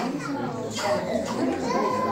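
Young children's voices mixed with adult chatter in a large room, with no music playing.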